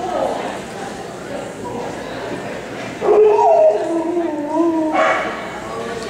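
A dog's long, pitched cry of about two seconds, starting about halfway in, wavering and dropping in pitch.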